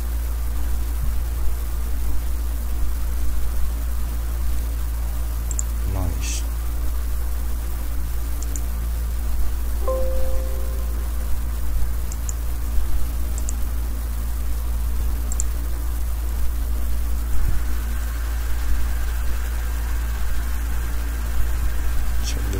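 Steady low electrical hum and hiss from the recording microphone, with a few faint short clicks scattered through.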